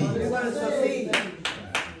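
Hands clapping: about three sharp claps in quick succession in the second half, after faint voices.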